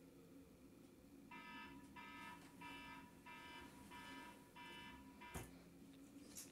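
A bedside alarm beeping: six short, high electronic beeps about two-thirds of a second apart, then it stops with a single sharp knock.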